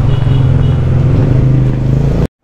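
A motor scooter engine running close by, a loud steady low drone.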